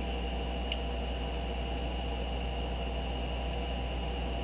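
Steady background hum and hiss with a faint high whine, the constant noise floor of the recording, and one faint tick a little under a second in.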